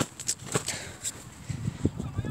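Rustling handling noise with scattered sharp clicks and a few soft low knocks, as plush toys are swung about and knocked together by hand.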